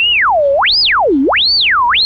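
A single pure electronic sine tone sweeping smoothly up and down in pitch, from a low hum up to a shrill whistle and back about three times. It is drawn by hand with the mouse in Chrome Music Lab's Spectrogram draw tool.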